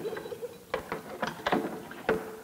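A string of irregular small clicks and light knocks, about eight to ten over two seconds, with no voice.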